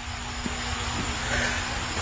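Steady outdoor background noise: a low rumble with a faint steady hum, swelling slightly about a second and a half in.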